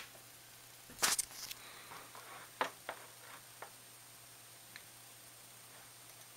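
A few soft computer-mouse clicks in a quiet room with a faint low hum, led by one louder click about a second in.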